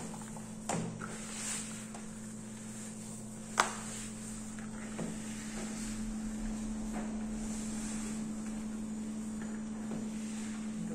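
Hands kneading crumbly cornmeal dough in a plastic bowl: soft rubbing and squeezing, with a few light knocks, the sharpest about three and a half seconds in, over a steady low hum.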